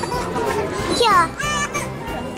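Children's voices, one high young voice speaking about a second in, over background music.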